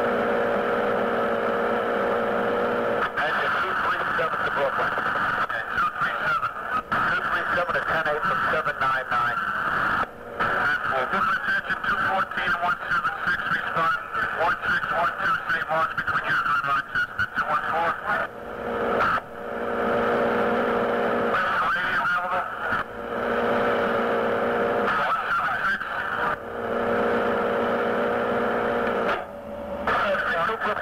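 Fire department radio traffic recorded off the air: thin, muffled, unintelligible radio voices. Several times they give way to a steady buzzing tone while the channel stays open.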